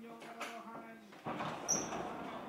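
Television sound playing into the room: a held, steady-pitched voice-like note that ends about a second in, then a sudden noisy swell. Two short high squeaks come near the end.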